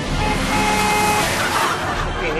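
A car passing along the street, a rushing noise that swells to a peak about a second and a half in and then eases, over steady sustained music.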